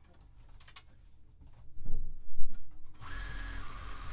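Sewing machine running briefly, top-stitching straps down, louder for a second or two in the middle.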